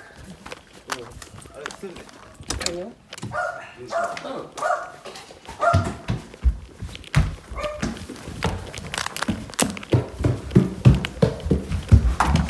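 Footsteps and knocks of a handheld camera being carried in from outside across a wooden floor, with many short thuds in the second half. A short vocal sound, a few pitched calls, comes about three to five seconds in.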